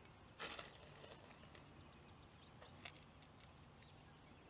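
Near silence: faint outdoor background, broken about half a second in by a brief rustling noise lasting about a second, with a short click a little before three seconds.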